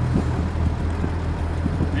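Freshly rebuilt Hercules inline-six petrol engine of a 1943 M8 Greyhound armoured car idling with a steady low hum.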